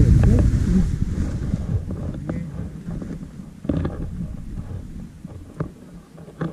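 Wind rumbling on the camera microphone, fading over the first few seconds, with scattered clicks and rustles of paragliding harness gear being handled.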